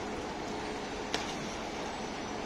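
Steady outdoor city background: distant traffic and construction-site noise, with a faint steady hum that stops about a second in at a single short click.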